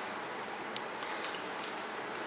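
Steady room hiss with two or three faint short clicks about a second in.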